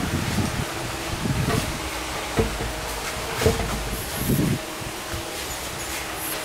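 Steady workshop background noise with a faint motor hum, broken by a few brief muffled knocks about two and a half, three and a half and four and a half seconds in.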